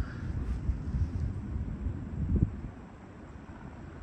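Wind buffeting the microphone: an uneven low rumble that eases off near the end.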